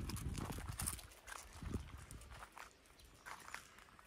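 Footsteps crunching on loose gravel: a quick run of small crunches in the first second, thinning to faint scattered clicks.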